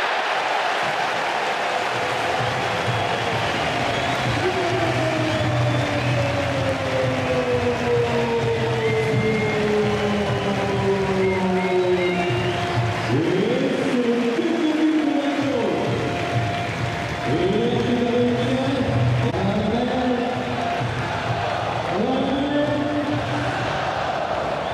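Stadium crowd celebrating a goal, with music and chanting in repeated rising-and-falling phrases over steady crowd noise.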